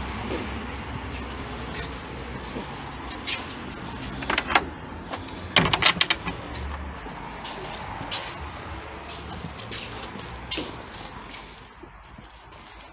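Footsteps and a wooden garden gate being handled, over a steady low rumble. Two clusters of sharp latch clicks and knocks come about four and a half and six seconds in.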